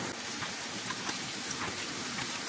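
Diced mushrooms sizzling in a skillet, a steady hiss, with a few faint clicks.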